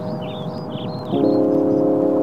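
Background music of long, ringing held chords, with short high chirps over the first half; a new, louder chord comes in about a second in.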